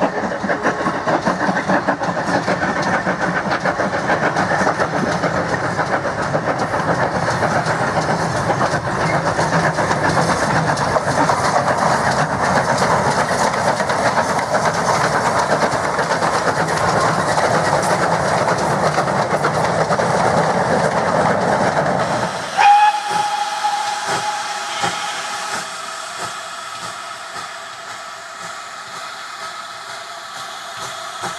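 Steam locomotive working hard as it hauls a goods train, its exhaust a loud continuous chuffing. About 22 seconds in this gives way abruptly to a short, steady, high steam whistle blast, then a quieter hiss of steam.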